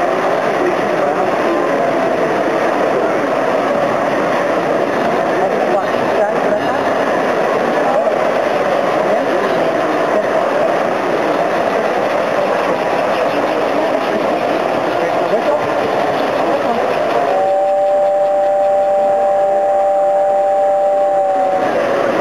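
S gauge model trains running on the layout under steady crowd chatter. Near the end a steady two-note train horn sounds for about four seconds.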